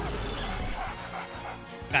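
Slot game soundtrack and effects: a cartoon dog barking sound effect over the game's music with a steady low bass, as a bonus feature triggers on the reels.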